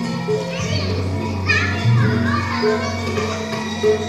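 Javanese gamelan music playing in steady held tones, with children's voices over it about a second and a half in.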